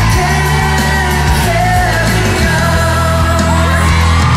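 A live pop song played loud through a concert PA: a male singer's voice over a steady bass and beat, with fans yelling and screaming over it.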